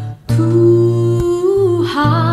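A woman singing a slow Indonesian worship song over guitar accompaniment. After a short gap she holds one long note, which bends in pitch just before the end.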